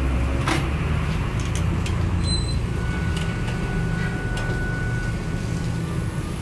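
Steady low rumble of background machinery, with a single sharp knock about half a second in.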